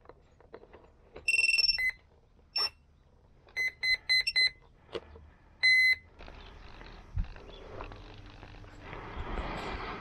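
Electronic startup beeps from the FX-61 Phantom flying wing's onboard electronics, as the flight controller and ESC come up after the battery is connected: a longer two-note tone, then short high beeps, a quick cluster of them about four seconds in and a last one near six seconds. After that, a soft rustle of the plane being handled grows toward the end.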